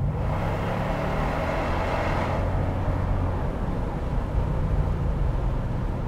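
The supercharged V8 of a 2002 Mercedes-Benz SL55 AMG, fitted with an aftermarket exhaust, runs on the move with the roof open. A steady low engine drone sits under a rush of wind and road noise; the rushing is loudest in the first two seconds or so and then eases.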